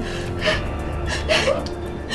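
A woman gasping for breath, two short breaths about half a second and a second and a half in, over steady background music.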